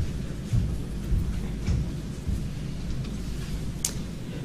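Courtroom room noise while the jury files out: a steady low rumble with soft, irregular thumps and rustling from people moving, and one sharp click near the end.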